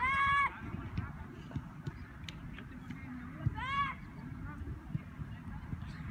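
Two loud honking calls, each about half a second long and about three and a half seconds apart, over a steady low rumble.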